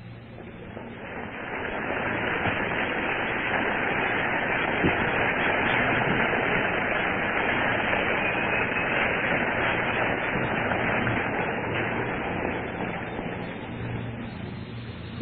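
A steady, hiss-like wash of noise from a live audience, swelling in over about two seconds, holding, and fading near the end.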